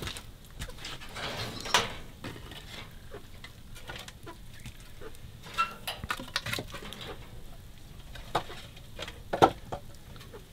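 Firewood knocked and shifted as pieces are laid on an open wood fire: scattered knocks and clicks, the loudest near the end.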